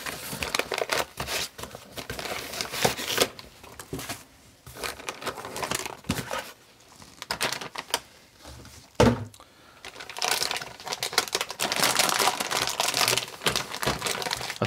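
Metallized anti-static bag crinkling as it is handled and unwrapped, in spells with quieter pauses, and a single thump about nine seconds in.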